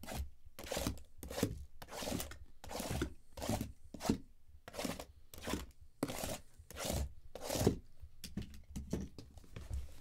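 Shrink-wrapped hobby boxes and their cardboard case being handled, a regular run of short plastic-and-cardboard rustles about twice a second.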